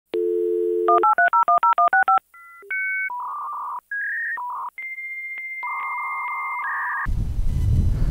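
Dial-up modem connecting: a dial tone, then a quick run of about ten touch-tone digits, then the modem handshake of steady whistles and warbling tones, with a long high tone broken at even intervals. It cuts off about seven seconds in, giving way to a low outdoor rumble.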